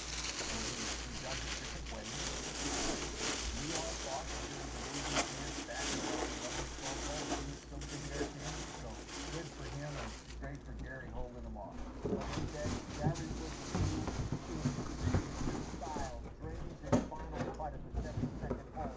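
Plastic wrapping crinkling and rustling steadily as a full-size football helmet is pulled from its box and unwrapped, then scattered knocks and taps of handling in the second half.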